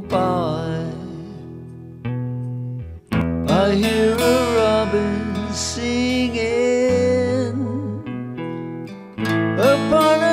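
Male voice singing a 1930s popular song over a backing of strummed guitar and bass. The voice holds a long, wavering note at the start that fades away, and a louder new sung phrase comes in about three seconds in.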